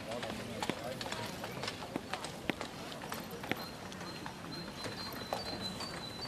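Outdoor murmur of people's voices, with many sharp, irregularly spaced clicks and knocks throughout and a faint thin high tone in the second half.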